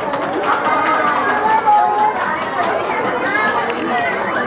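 A crowd chattering, with many voices talking over one another and a few high voices calling out.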